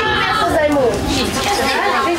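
A group of children chattering, many voices talking over one another with no single clear speaker.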